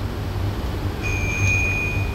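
A pause in speech filled by a low steady hum. About halfway through, a single thin, high, steady tone starts and holds for just over a second.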